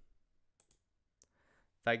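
A few sharp, scattered clicks of a computer mouse working an on-screen calculator. A man's voice starts just at the end.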